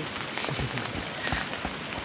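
Rain falling steadily, with scattered drops ticking on a surface.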